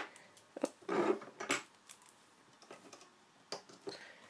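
Small scattered clicks and taps of a rubber loom band being stretched and hooked over the clear plastic pegs of a band loom.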